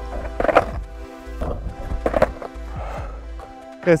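A few sharp clacks of a skateboard popping and landing on asphalt during a trick attempt, over steady background music.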